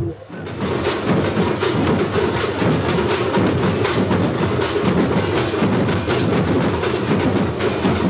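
A group of large double-headed barrel drums (dhol) beaten together in a fast, steady, driving rhythm.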